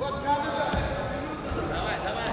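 Voices shouting in a sports hall over the thuds of freestyle wrestlers' feet and hands on the mat, with one sharp thump about a third of a second in and a duller one just after.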